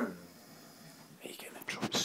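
A person murmuring "hmm" at the start, then whispering in short, hushed bursts in the second half.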